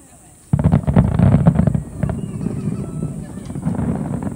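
Aerial fireworks shells bursting in a rapid barrage: a dense rumble of overlapping booms starts suddenly about half a second in and is loudest for the next second or so, then rolls on more softly.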